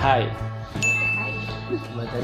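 A single bright sound-effect ding: one high, clear tone that starts sharply about a second in, holds steady for about a second and cuts off abruptly.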